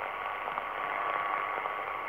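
Yaesu FRG-7 shortwave receiver on the 10-metre band with the noise blanker off: a steady hiss of band noise and pulsating interference, with a faint steady tone, the wanted signal, underneath.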